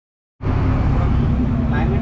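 Silence, then less than half a second in the on-board sound cuts in suddenly: a boat's engine running with a steady low drone under the rush of wind and water, voices faintly behind it.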